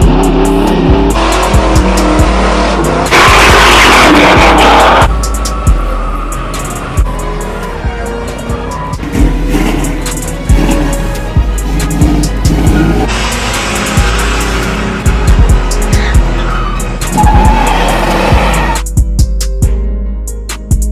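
Car doing a burnout, its tires spinning and squealing on pavement, loudest about three seconds in and again in the last few seconds, with music with a steady beat playing over it.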